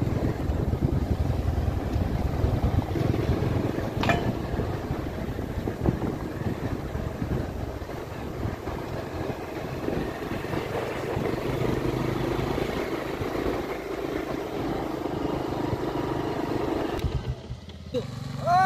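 Continuous rumble of a moving vehicle heard from on board along a rough dirt road: engine and road noise that rises and falls unevenly. One sharp click about four seconds in.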